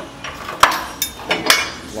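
A hand tool clinking and tapping against the steel front-suspension parts: a handful of sharp metallic strikes, irregularly spaced, each ringing briefly.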